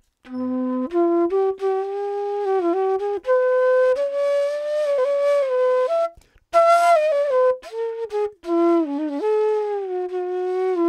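Alon Treitel Hindustani E bansuri, a bamboo transverse flute, playing a slow phrase of held notes with small bends, climbing in pitch and then falling back. There is a brief breath break a little past halfway.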